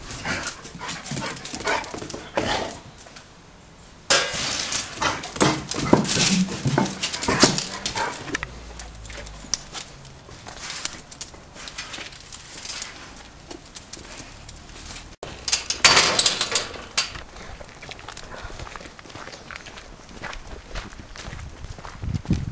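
A small dog barking in short bursts at intervals, loudest about six seconds in and again around sixteen seconds in.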